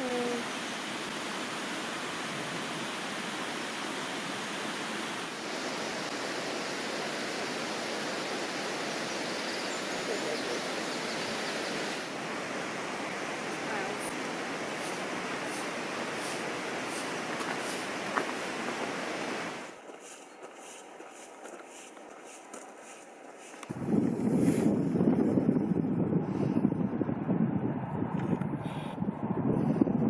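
Steady outdoor rushing noise for about twenty seconds, then after a short quieter stretch, gusting wind buffeting the microphone loudly for the last several seconds.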